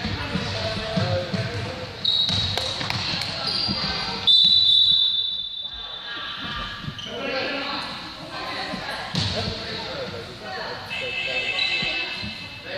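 Basketball dribbled on a gym floor, then a referee's whistle blown in one long blast about four seconds in, the loudest sound, stopping play; voices echo around the large hall.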